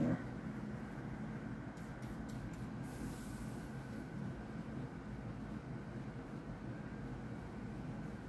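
Steady low room hum with faint strokes of a paintbrush working acrylic paint onto a cardboard box.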